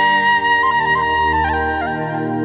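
Song accompaniment led by a flute playing a slow melody of held notes that step up and down, over sustained lower accompaniment, with no voice.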